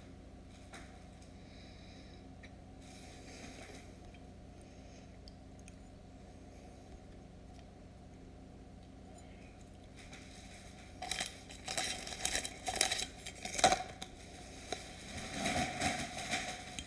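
Quiet room tone for about ten seconds, then irregular crinkling and rustling of handled packaging, with sharp crackles coming thick and uneven through the last few seconds.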